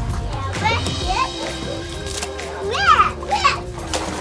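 Young children squealing with high-pitched, wordless cries while playing in a tub of water, in two bursts, about a second in and again near three seconds, over background music.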